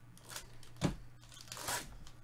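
The foil wrapper of a Diamond Kings baseball card pack crinkling and tearing open. There is a short sharp crack just under a second in and a longer rip near the end.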